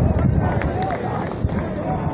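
Distant voices of players and onlookers calling out across an open field, with wind rumbling on the microphone.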